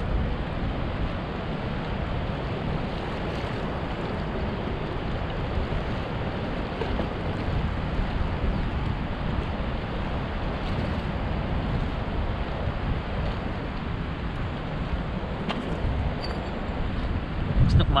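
Steady rushing noise of wind on the microphone mixed with moving water, strongest in the low end.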